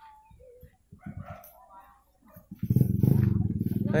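A motorcycle engine running close by: a loud low rumble with a quick, even pulse that comes in suddenly about two and a half seconds in, after faint voices.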